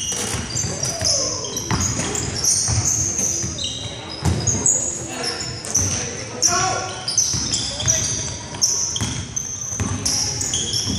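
Basketball game on a hardwood gym floor: the ball bouncing as it is dribbled, and sneakers squeaking in many short, high chirps as players cut and stop. Voices carry through the echoing hall.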